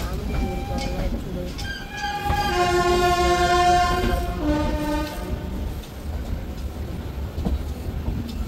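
Indian Railways train horn sounding for about three seconds, its note stepping slightly lower near the end. Under it runs the steady low rumble and rail clatter of the moving train.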